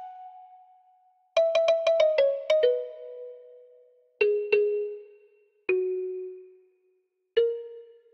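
Soft kalimba patch from the Hypersonic synth playing a sparse melody of plucked notes, each ringing out and fading: a quick run of about seven notes stepping down in pitch, then a pair, then two single notes.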